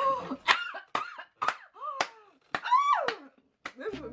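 Women laughing in short, breathy bursts, about two a second.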